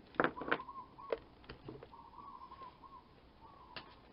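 Knocks and clatter from a clothes iron being picked up and moved off a sewing table, several in the first second and one more near the end. A faint wavering tone runs behind them.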